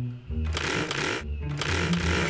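Cartoon chainsaw sound effect: a chainsaw revving about half a second in, breaking off briefly and starting again, over background music.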